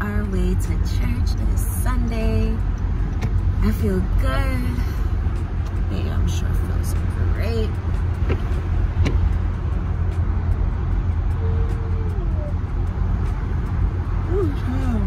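Steady low rumble of a moving car heard from inside the cabin. A woman's voice comes and goes over it in the first few seconds and again near the end.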